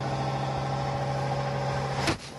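A boat's engine running with a steady drone. It starts and cuts off abruptly, about two seconds apart.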